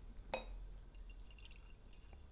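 Tequila poured from a glass bottle into a small whisky tasting glass: a light clink of glass about a third of a second in, then a faint trickle.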